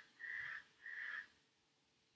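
Faint, short high-pitched tones repeating about every half second, stopping a little past a second in.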